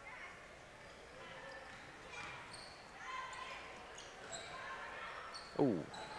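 Faint indoor basketball game sound: the ball bouncing on the court, a few short high sneaker squeaks and a low crowd murmur.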